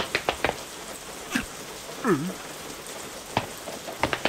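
Steady rain falling, with heavy drops splatting now and then. About two seconds in, a short cartoon voice-like sound slides down in pitch and back up.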